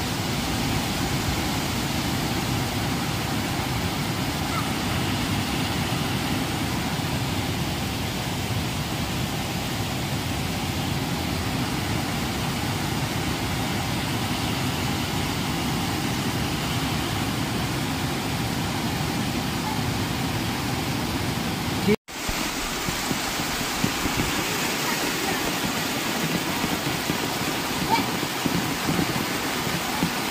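Muddy floodwater of a swollen hill stream rushing over rocks, a steady noise of fast-flowing water. A brief dropout about two-thirds of the way through, after which the water sound carries on with less low rumble.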